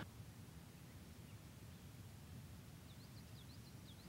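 Near silence: faint background hiss, with a short run of faint, high chirps near the end.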